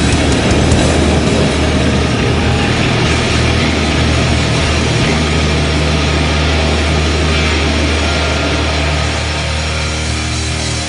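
Heavy metal band's final chord left ringing through the amplifiers after the song ends: a loud, steady low drone under a dense noisy wash, easing off slightly toward the end.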